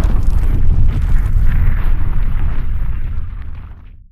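Logo-reveal sound effect: a deep, noisy boom like a fiery explosion, dying away over the last second.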